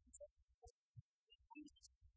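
Near silence: only faint, irregular low thumps and scattered short blips.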